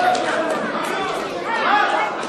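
Many overlapping voices chattering in a large hall, with a few scattered hand claps.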